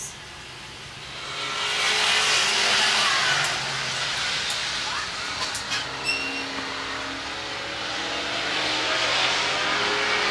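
A small field of four oval-track stock cars accelerating together off the start, the engine noise swelling about a second in and staying loud as the pack runs into the turn.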